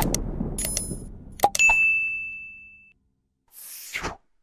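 Subscribe-button animation sound effects over the fading end of the theme music: several sharp clicks with short high pings, then a bell-like ding about one and a half seconds in that rings out for over a second. A short whoosh comes near the end.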